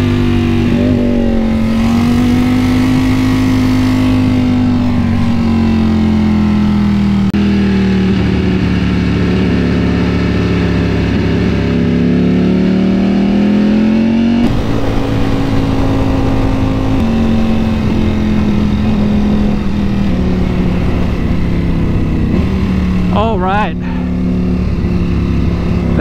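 Ducati Panigale V4's V4 engine running at low revs in second gear, its pitch drifting slowly up and down as the bike rolls at low speed, with wind noise on the onboard camera. The pitch jumps abruptly about halfway through.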